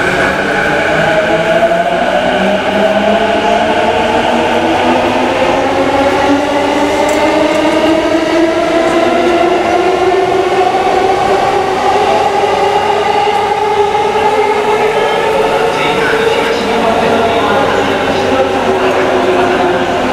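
Electric train motor whine: several tones that climb slowly and steadily in pitch as the train picks up speed.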